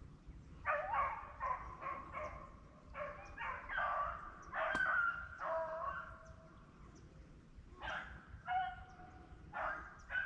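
A pack of rabbit-hunting hounds baying in short repeated calls, with a lull in the middle and a fresh burst near the end: the dogs giving mouth as they run a rabbit through the brush.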